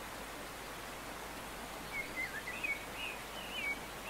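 A steady hiss of background noise with a few short, wavering bird chirps in the second half.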